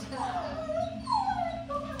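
A dog whining in a few short high-pitched whines that rise and fall in pitch.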